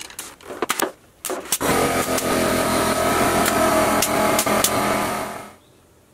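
Pneumatic brad nailer firing a quick string of sharp shots into cedar trim. A loud, steady motor then runs for about four seconds and stops.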